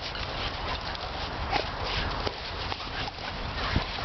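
Dogs' paws scuffling and crunching on gravelly sand as they chase in play, heard as irregular scrapes and clicks.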